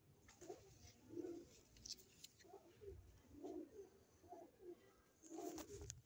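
Domestic pigeon giving a run of faint, low coos, repeated about once a second, with a few faint clicks among them.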